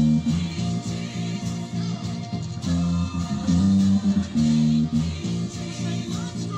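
Five-string electric bass guitar played with the fingers: a line of held low notes that change every half second or so, over other backing music.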